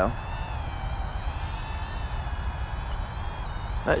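Brushed micro quadcopter's 8.5x20 mm coreless motors and props whining in flight, a thin high buzz whose pitch wavers up and down with throttle.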